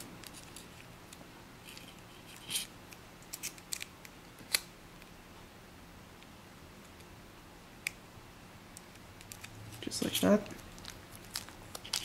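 A sheet of origami paper being folded and creased by hand: a few short, sharp paper crackles spaced out over several seconds, with a faint steady hum underneath.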